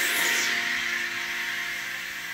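A synthesizer horn-patch chord on an electronic keyboard, held and slowly fading away, with a brief rustle right at the start.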